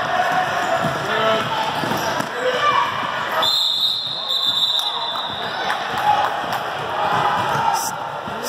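Basketball game sound in a gym: a ball bouncing on the indoor court and voices in the crowd echoing around the hall, with a steady high-pitched tone for about two seconds in the middle.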